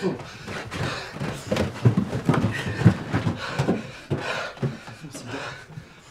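People talking: only speech, which the recogniser did not write down.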